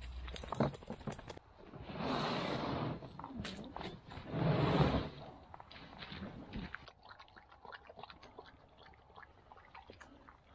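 An open canoe's hull being dragged up a grassy, leaf-strewn bank: two rough scraping drags, the second louder, with light knocks and rustling around them.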